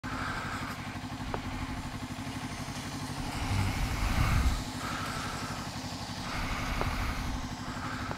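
Kawasaki Ninja 400's parallel-twin engine idling steadily at a standstill. A car passing on the wet road swells up about four seconds in, with a smaller swell near the end.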